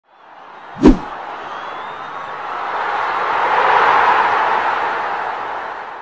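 Logo-intro sound effect: a sharp hit about a second in, then a rush of noise that swells for a few seconds and fades away near the end.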